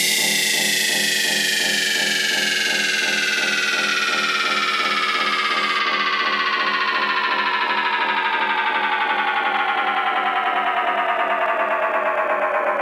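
Electronic dance track in a breakdown with no kick drum or bass: a synthesizer tone glides slowly and steadily down in pitch over a rapidly pulsing synth chord. About halfway through, the highest frequencies are cut away by a filter.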